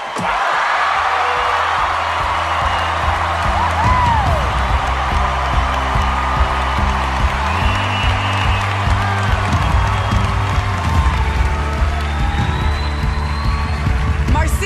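Studio audience cheering and applauding with occasional whoops, over sustained music.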